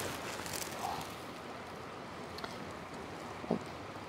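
Quiet outdoor background: a steady soft hiss with faint rustling of dry fern stalks as they are brushed, and one small click about three and a half seconds in.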